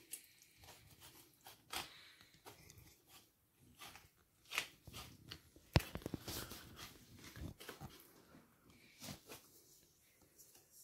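Knife slicing along a flatfish's bones on a plastic cutting board: faint, scattered scraping and crunching, with one sharp click about six seconds in.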